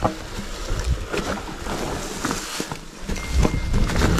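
Mountain bike riding down a rough forest singletrack: tyres rumbling over dirt, leaves and rocks, with irregular knocks and rattles from the bike and wind buffeting the microphone.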